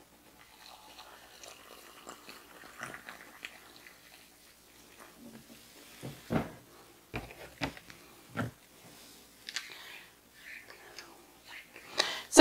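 Hot water poured from an electric kettle into a ceramic mug, faint over the first few seconds. Then a handful of sharp knocks and clinks as the kettle is set down and a metal spoon stirs cocoa in the mug.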